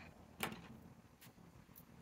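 Quiet handling noise on a desk: one short, light click about half a second in, followed by a couple of faint ticks.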